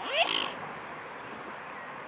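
One short rising animal call with high overtones, under half a second long, right at the start.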